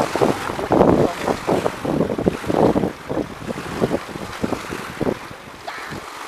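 Wind buffeting the microphone in irregular gusts over the wash of river water, loudest in the first few seconds and easing off toward the end.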